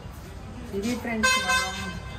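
A vehicle horn honks once, a steady high-pitched tone lasting about half a second just past the middle.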